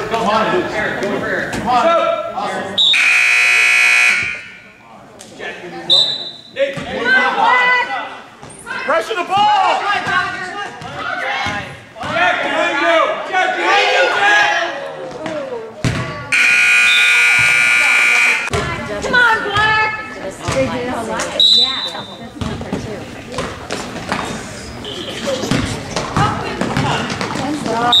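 Gym scoreboard buzzer sounding twice, each blast about two seconds long; the second comes as the game clock runs out, ending the period. Short high referee whistle blasts come in between, over crowd voices and a basketball bouncing on the floor.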